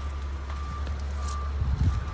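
A 2016 Honda Civic's warning chime beeping with the driver's door open, a short high beep about every two-thirds of a second. Beneath it runs a steady low rumble, and a brief low thump comes near the end.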